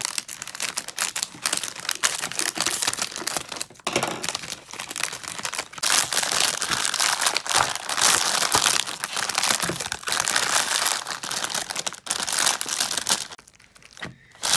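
Plastic outer bag of a frozen TV dinner crinkling and crackling loudly as the plastic-wrapped tray is slid out of it, a dense run of crackles with short breaks, loudest in the second half.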